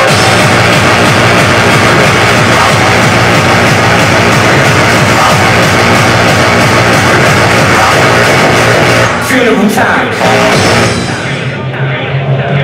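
Loud hardcore (gabber) dance music from a DJ set over a concert PA, recorded from within the crowd. Near the end the sound dips and the treble drops away, leaving a deeper, filtered sound.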